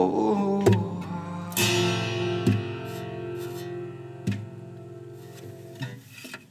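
Nine-string acoustic guitar playing the song's closing chords: a few slow single strums about a second apart, the strongest about a second and a half in, each left to ring and die away.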